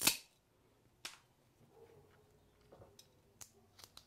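A sharp click right at the start, another about a second in, then a few faint clicks and taps near the end: small mosaic tile pieces being handled and set down on a work table.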